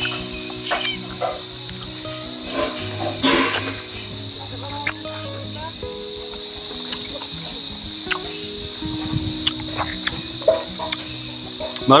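Steady high-pitched insect chorus, with soft background music of held notes underneath and a few scattered sharp clicks.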